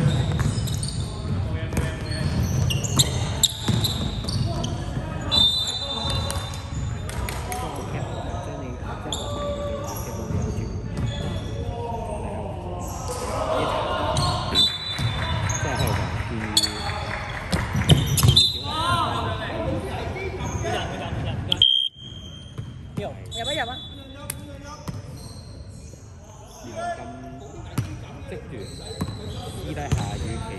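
Basketball game in a sports hall: the ball bouncing on the hardwood court, short sneaker squeaks and players' voices, echoing in the hall. About two-thirds of the way through the sound drops suddenly to a quieter stretch.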